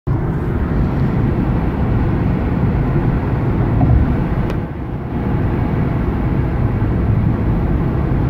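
Road and engine noise heard inside a car's cabin while driving along a motorway: a steady low rumble. A single light click about four and a half seconds in.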